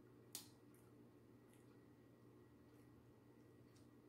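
Near silence with a few faint, short clicks, the sharpest about a third of a second in: quiet mouth sounds of chewing a mouthful of flaky beef patty.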